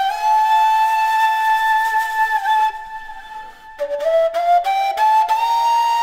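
A PVC kaval, an end-blown rim flute, playing a slow melody of long held notes. There is a brief gap near the middle, then a quick run of short rising notes leading into another long held note.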